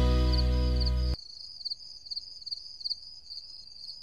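Intro music ending on a held, fading chord that cuts off about a second in. It leaves a faint, high, pulsing cricket-like chirp from the intro's soundtrack, which stops abruptly at the end.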